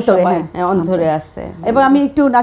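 A woman's voice speaking Bengali in a studio conversation, with a faint metallic jingle under it.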